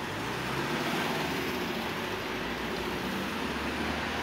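Steady road-traffic noise of cars on a city street, with a low engine hum underneath.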